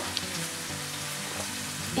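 Steady, soft sizzling hiss of hot food cooking.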